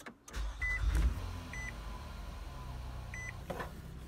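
Car engine started with the push-button start: it catches about half a second in, runs up loud for a moment, then settles to a steady idle. Three short dashboard chime beeps sound over it.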